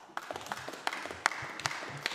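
Scattered applause from a small group of people, with the separate hand claps distinct, starting suddenly.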